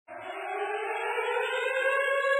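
A steady synthesizer tone fading in and growing louder, the held opening note of theme music.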